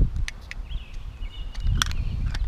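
Camera handling noise as a GoPro is fitted into its housing case: a low rumble from the microphone being moved about, with several sharp clicks, two of them close together near the end. A faint high chirp rises and holds briefly about a second in.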